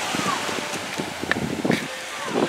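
Wind buffeting the microphone over small waves washing onto the sand.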